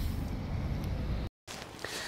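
Low, steady outdoor background rumble with no distinct event. It cuts out to dead silence at an edit a little over a second in, then picks up again as a fainter ambience.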